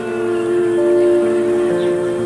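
Live band music: a sustained chord on the keyboard with acoustic guitar. The held notes change partway through.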